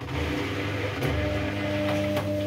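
Kogan front-loading washing machine starting up abruptly and turning its drum: a steady motor hum with a knock about a second in as the wet laundry tumbles.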